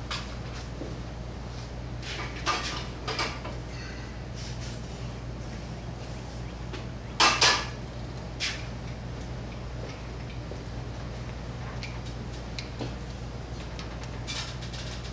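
Small metal carburetor parts and tools being handled on a workbench: a few scattered clinks and rattles, the loudest a short double clatter about seven seconds in, over a steady low hum.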